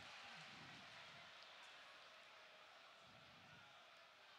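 Near silence: faint, steady crowd ambience of a football stadium during open play.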